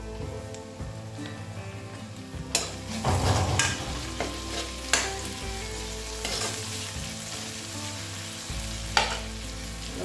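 Tomatoes and onions frying in oil in an aluminium kadai, sizzling steadily, while a utensil stirs them and scrapes against the metal pan. There are a few sharp scrapes, with a cluster a little after two and a half seconds and single ones near five and near nine seconds.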